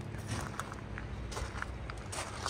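Footsteps on ground thinly covered with fresh snow: a few light, irregular steps over a low steady rumble.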